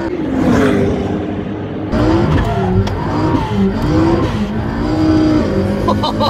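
McLaren P1's twin-turbo V8 heard from inside the cabin under hard driving on track. Its revs climb and fall several times in quick succession.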